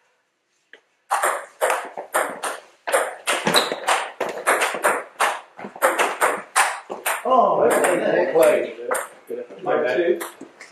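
Table tennis rally: the ball clicks back and forth off bats and table at about three hits a second, starting about a second in after a moment of quiet. A voice comes in over the last couple of seconds as the point ends.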